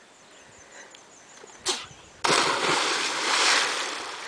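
A person landing in deep water after a flip off a rock ledge: a sudden loud splash a little over two seconds in, then water churning and spraying that slowly fades. A brief sharp sound comes about half a second before the splash.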